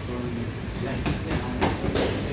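Gloved punches landing on hand-held pads: a quick combination of three or four hits in the second half, over a steady low rumble of gym fans.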